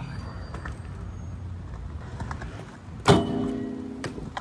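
BMX bike tyres rolling on a concrete skatepark with a low rumble, then a loud metallic clank a little after three seconds in, as the bike comes down hard, followed by a short ringing.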